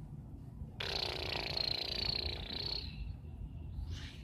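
A modded beyblade spinning on a plastic stadium: a rough whirring with a high ringing tone starts suddenly about a second in, then fades over the next three seconds to a thin tone, falling slightly in pitch as the top slows.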